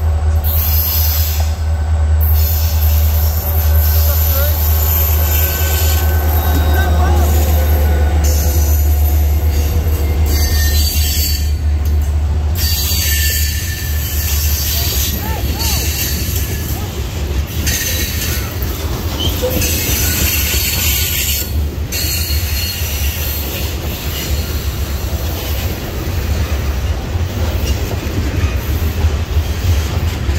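Norfolk Southern freight train passing close by. For about the first twelve seconds the diesel locomotive's deep engine rumble dominates as it approaches and goes by. After that, a long string of covered hopper and tank cars rolls past with continuous wheel-on-rail noise.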